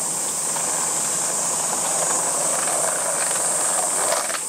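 Skateboard wheels rolling over pavement, a steady rolling hiss.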